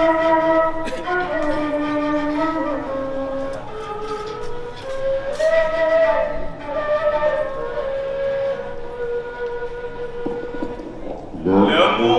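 Long bamboo flute played solo into a microphone: a slow, ornamented melody in maqam rast of held notes that slide between pitches. Near the end a louder rising sweep cuts in, a voice on the microphone.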